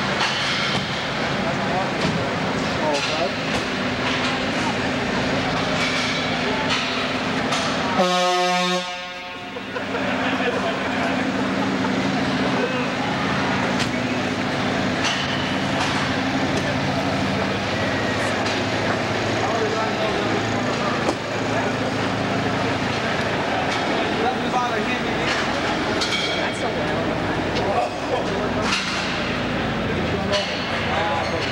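Semi tractor's diesel engine running steadily in a large hall, with a short air-horn blast about eight seconds in. Voices murmur in the background.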